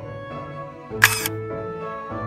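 Background music with strings and a regular bass pulse; about a second in, a single camera shutter click, the loudest sound, cuts briefly through it.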